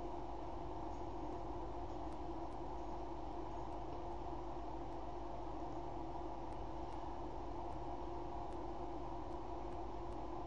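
Steady background hum and hiss with no distinct events: constant room noise.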